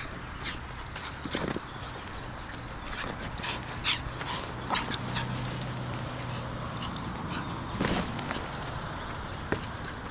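A small Griffon Bruxellois dog making short sounds as it plays with a football, among scattered knocks and scuffs of paws and ball on bare earth. The loudest are near four and eight seconds in.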